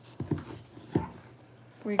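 A dog whimpering: a few short whines, falling in pitch, the last about a second in.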